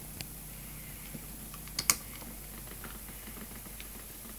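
Scattered light clicks over a faint steady hum, with one sharper click about two seconds in: the pulse motor's power leads being handled and unhooked.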